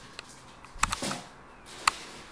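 Two short, sharp clicks about a second apart over a faint steady hiss, with a fainter tick just before them.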